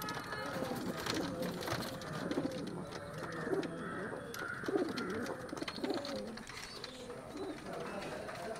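Domestic pigeons cooing, several low, pulsing coos overlapping one another, loudest from about two to five seconds in.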